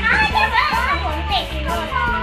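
Children's excited high-pitched squeals and shouts over background music.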